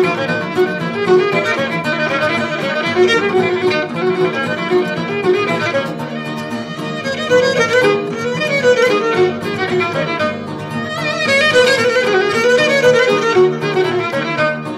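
Cretan lyra, a bowed pear-shaped fiddle, playing the melody of Sitia-style kontylies, a Cretan dance tune, with laouto accompaniment; purely instrumental, without singing.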